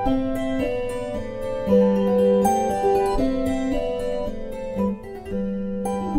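Kantele music: plucked strings playing a polska, a Nordic folk dance tune, with a bright ringing melody over low bass notes.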